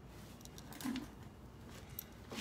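Faint, short scrapes of a paintbrush working thinned paint onto a surface, with a small tap near the end.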